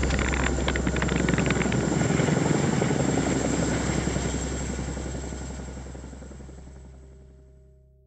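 Helicopter noise: a steady low rotor drone with rapid chopping over the first two seconds, fading away over the last three seconds.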